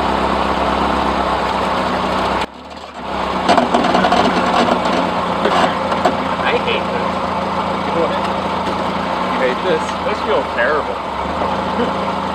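Subaru Forester engine running steadily with the centre differential unlocked, so the drive goes to the lifted front passenger wheel and the car does not climb. The sound drops out sharply for about half a second a couple of seconds in, then carries on steadily.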